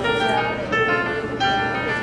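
Children's choir singing held notes together.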